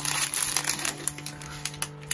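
Small plastic zip-top bags of diamond-painting drills crinkling in the hands as they are picked up and sorted, with irregular little crackles, over a faint steady low hum.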